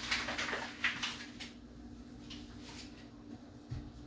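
Soft handling noises at a kitchen counter: a few short scrapes and rustles in the first second and a half, then quiet over a steady low hum, with a soft thump near the end.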